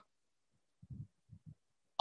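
Near silence in a pause between spoken phrases, broken by three or four short, faint low thumps about a second in.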